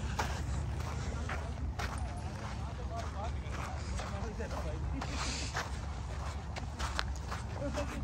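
Outdoor ambience: a steady low rumble with scattered footstep-like clicks on gravel and faint voices of people nearby.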